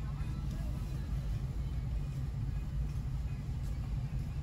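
Steady low rumble of a car driving slowly with its windows open: engine and road noise, with the street noise from outside coming in through the windows.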